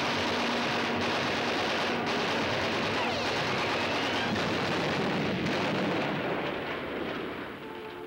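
Cartoon battle sound effects: a dense, continuous barrage of gunfire and explosions, with a brief whistling glide about three seconds in. The barrage dies down over the last couple of seconds.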